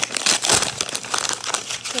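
White paper wrapping crinkling and crackling in the hands as it is unfolded from a small container of beads, loudest about half a second in.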